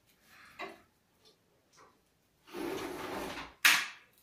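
A noisy scrape lasting about a second, followed at once by a sharp knock, the loudest sound; a short, fainter rustle comes earlier.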